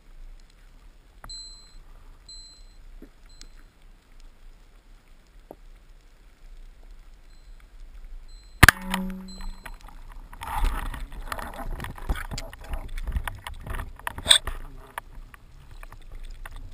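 Speargun firing underwater: one sharp crack with a short metallic ring as the shaft is released, about halfway through. Several seconds of dense crackling and knocking follow, as the shaft and line pull against the struck fish.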